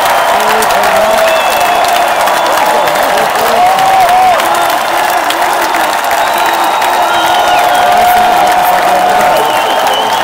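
Large concert crowd cheering and applauding steadily, with long held shouts rising above the clapping.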